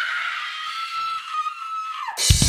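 One long, high-pitched scream-like cry. It slides up at the start, holds steady and falls away at the end.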